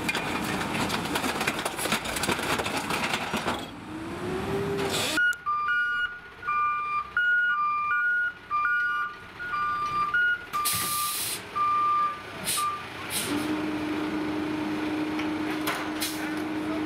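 Peterbilt 520 McNeilus rear-loader garbage truck: machine noise from its hydraulic packer and diesel engine for the first few seconds, then its reversing alarm beeping steadily on and off for about eight seconds, with a short air-brake hiss near the end of the beeping. A steady engine hum follows.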